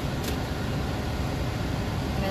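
Steady cabin noise of a stationary car with its engine and air conditioning running: a low rumble under an even hiss, with a faint click just after the start.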